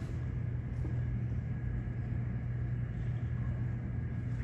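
A steady low hum of background noise, with no distinct event.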